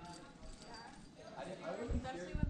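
Faint, indistinct voices in the second half, with light knocking and clinking of climbing gear (cams and carabiners on a harness rack).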